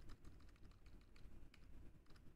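Faint computer keyboard typing: a run of light, irregular key clicks.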